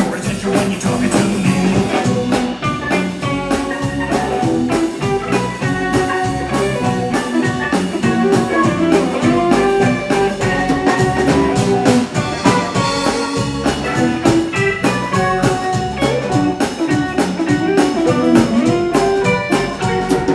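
Live rock band playing an instrumental passage without vocals: electric guitars over bass and a drum kit.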